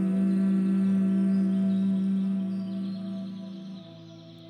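A person humming one long, steady note that fades out near the end.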